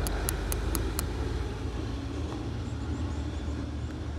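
Steady low background hum and rumble, with a few faint sharp ticks in the first second.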